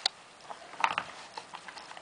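A Doberman nosing at a wooden Dog Casino treat-puzzle board, its drawers and plastic lock pegs giving a few short knocks and clicks, with a cluster about a second in.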